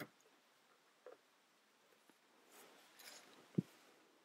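Plastic construction-toy beams and columns handled and fitted together: a few faint clicks, a light scraping rustle, then a sharper knock near the end, the loudest sound.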